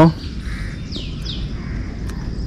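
Two short, falling bird chirps about a second in, over a steady low rumble of background traffic picked up by a phone's built-in microphone.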